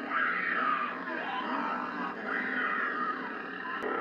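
Horror film soundtrack: a woman screaming in long, wavering cries as she flees.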